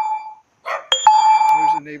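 Neighbourhood dogs barking, with a loud, flat ringing tone that starts sharply about a second in and lasts just under a second.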